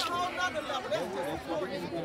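Indistinct chatter of several people talking at once among spectators, with no single clear voice.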